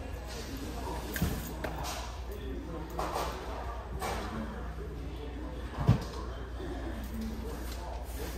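Large-store ambience: faint, indistinct voices over a steady low hum, with a dull knock about a second in and a louder one near six seconds.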